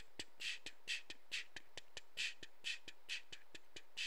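A steady rhythm of breathy, hissing percussive bursts about twice a second, with sharp clicks in between, like a beatbox or a drum beat.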